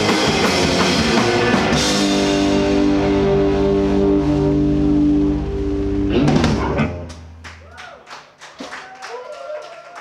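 Live rock band of electric guitars, bass and drums finishing a song: the full band plays, then holds a ringing chord for a few seconds, and a final crash on the drums cuts it off about six seconds in. Scattered audience clapping follows near the end.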